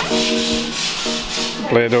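A broom sweeping a concrete floor in long scratchy strokes, over steady background music.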